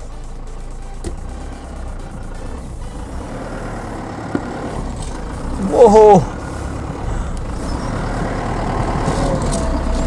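Mahindra Scorpio SUV engine running as the car pulls away slowly on a completely flat front tyre. It grows steadily louder as the car comes closer.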